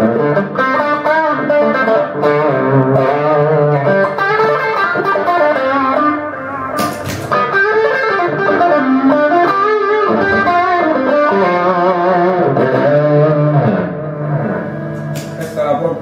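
Stratocaster electric guitar played through a chain of analogue effects pedals all switched on at once, giving a sustained, processed melodic lead over chords. A short burst of noise comes about seven seconds in.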